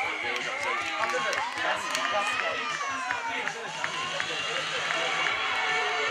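Sideline spectators shouting and cheering over one another, many voices overlapping, some calls drawn out for a second or more.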